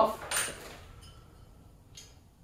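Metal parts of a JNB PRO aluminium cabinet hardware jig clinking as its stops are taken off: a brief metallic clatter about half a second in, light handling noise, and a faint click near the end.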